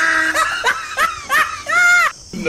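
A man laughing in several short, high-pitched bursts, ending on one longer held note.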